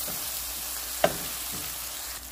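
Chopped onions and berbere spice sizzling in oil in a nonstick frying pan as a wooden spatula stirs them, with one sharp knock about halfway through.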